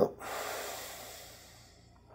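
A man breathing out slowly and audibly, the breath fading away over about a second and a half, just after a brief voiced sound at the very start.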